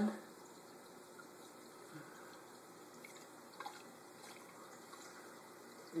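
Faint, steady pour of fresh saltwater from a plastic jug into a one-gallon glass reef vase, running onto the rocks, with a couple of tiny drips.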